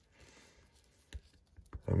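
Quiet room with one soft knock about a second in and a few faint clicks near the end, from hands handling a plastic action figure.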